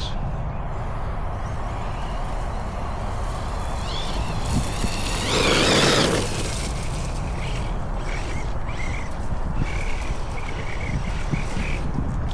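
Losi Hammer Rey RC rock racer, on a 3S battery, with its electric motor whining up in pitch about four seconds in. Then comes a loud rush of motor and tyres on grass as the truck passes close, about five to six seconds in, over steady low background noise.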